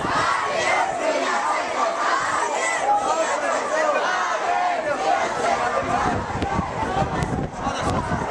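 A marching crowd, many voices shouting at once and overlapping, at a steady loud level.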